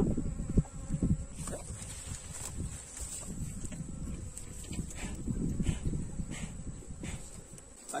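Honeybees buzzing around an open hive, a wavering hum that swells and fades as bees fly close to the microphone.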